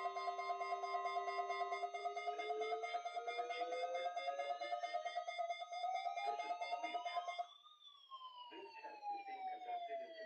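Overlapping electronic alarm tones from weather-alert receivers sounding a tornado-drill test alert: a steady alert tone that stops about two seconds in, a fast-pulsing beeping alarm, and a siren-like wail that rises slowly, peaks about three quarters through, then falls again.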